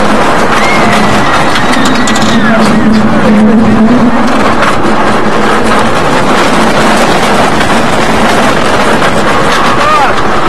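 Heavy wind noise on the microphone as a steel roller coaster train runs along its track, with riders' yells and screams rising through it in the first few seconds.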